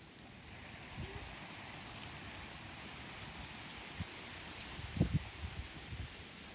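Steady hiss of wind in garden trees and bamboo, with a few short low thuds, the loudest about five seconds in.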